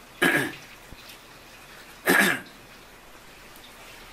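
A man coughs twice, two short coughs about two seconds apart.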